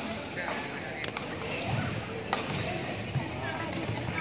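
Badminton rackets striking the shuttlecock in a rally: three sharp smacks, about half a second, one second and two seconds in, over the chatter of spectators in a sports hall.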